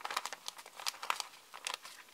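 Paper planner sticker sheets being picked up and shuffled in the hands, rustling and crinkling in a run of quick crackles that stops near the end.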